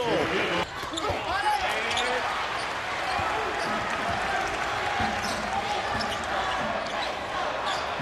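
A basketball being dribbled on a hardwood court over the steady noise of an arena crowd.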